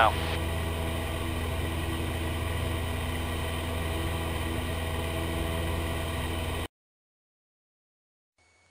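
Cessna 172P's four-cylinder Lycoming piston engine and propeller droning steadily in flight, heard from inside the cabin. The drone cuts off abruptly about seven seconds in.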